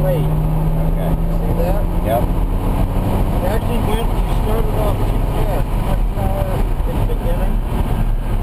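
BMW Z4 M Coupe's 3.2-litre straight-six heard from inside the cabin, running under way with road and wind noise; its steady note drops to a lower pitch about three seconds in.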